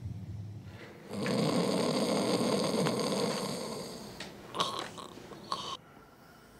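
A person snoring: one long, rasping snore of about three seconds that fades away, followed by two short, soft sounds.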